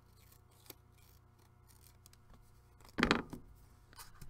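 Scissors snipping the paper edge of a small card in a few quiet cuts, followed about three seconds in by one louder, brief knock.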